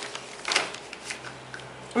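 A large paper pattern sheet rustling as it is handled and a ruler is set down on it, in a few short rustles.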